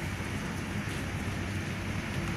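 Steady, even background noise of a busy indoor hall, with no distinct knocks or voices standing out.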